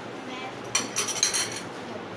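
Dishes and cutlery clinking: a quick run of ringing clinks starting about three-quarters of a second in and lasting under a second.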